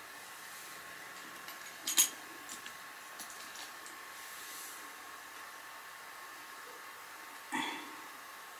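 Motorised display turntable running with a faint, steady hum. A sharp click comes about two seconds in, and a short soft sound near the end.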